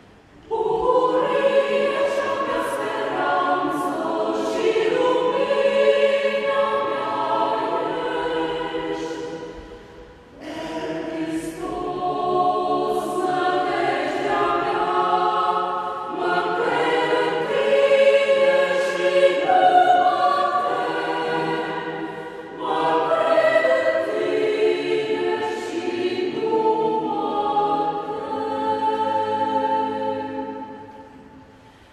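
Mixed choir of men's and women's voices singing together, entering about half a second in, with two short breaks between phrases, near ten seconds and near twenty-two seconds.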